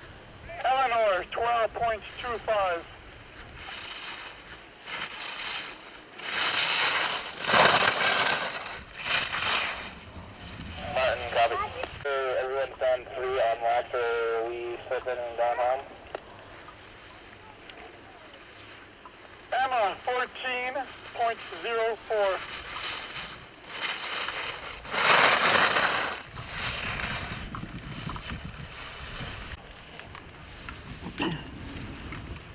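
Ski edges scraping and hissing across firm snow in a few loud sweeps, each a second or two long, as slalom racers carve turns close by. Raised voices call out several times in between.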